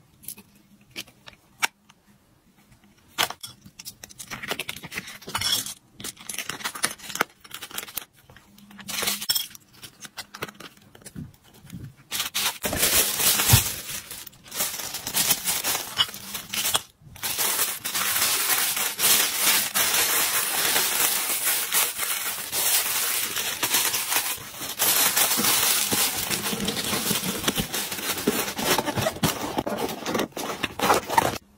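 Scattered light clicks and taps of a small plastic box and its contents being handled, then, about twelve seconds in, a long stretch of tissue paper crinkling and rustling as it is folded over the order.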